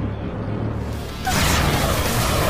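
Anime sound effects over background music: a steady low drone, then a sudden loud rushing blast about one and a quarter seconds in as a black anti-magic energy surge is unleashed.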